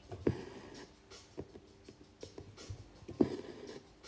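Embroidery needle and thread being worked through fabric held taut in a wooden hoop: small scratchy ticks, with two sharper pops about three seconds apart as the needle goes through.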